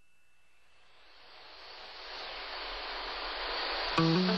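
A hiss-like noise fades in and swells steadily louder over about three seconds, then gives way to strummed guitar music starting at the very end.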